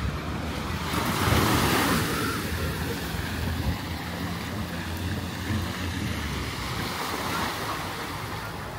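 Small waves breaking and washing up the sand, loudest about a second in, with wind on the microphone. A jet ski's engine hums offshore underneath.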